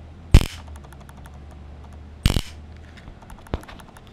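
Homemade spark-gap jammer discharging: a 6 V high-voltage step-up module, rated to 400,000 volts, arcs across a small wire bridge gap with two sharp snaps about two seconds apart, the second a short crackling burst. A fainter click follows near the end.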